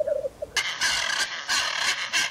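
Blue macaw giving harsh, squawking calls in a row from a stock forest sound-effect recording, starting about half a second in.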